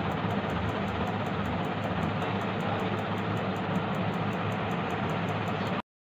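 Steady mechanical running noise with a fast, even ticking of about five ticks a second, cutting off abruptly near the end.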